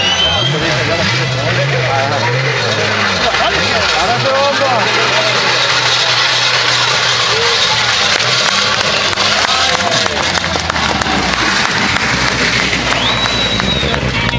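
Peugeot 207 S2000 rally car's engine running at low, steady revs as the car comes up slowly toward the spectators after an earlier knock, under their chatter.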